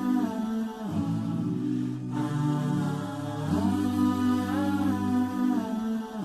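Intro music of wordless vocals: hummed, chant-like notes held long over a low sustained tone, with slow melodic turns in a recurring phrase.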